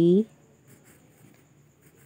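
Pencil writing cursive letters on ruled notebook paper, a faint scratching of the lead on the page.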